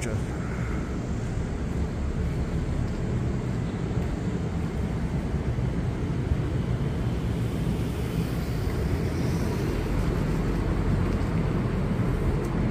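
Steady low outdoor rumble of wind on the microphone and background noise, with a faint higher hiss swelling briefly about two-thirds of the way through.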